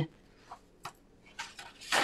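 A lull of quiet room tone with two faint short clicks, about half a second and nearly a second in, and soft handling noise near the end.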